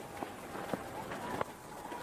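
Steady murmur of a stadium crowd as heard on a television cricket broadcast, with a few faint knocks.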